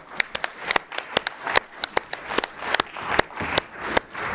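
A small audience applauding: many separate, irregular hand claps rather than a dense roar.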